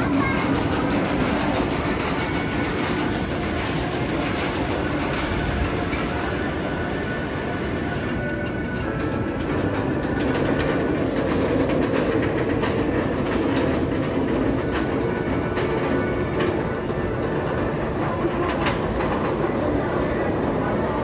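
Goliath roller coaster train rolling out of the station and along the track toward the lift hill: a steady rumbling clatter of wheels on steel track, with many small clicks throughout.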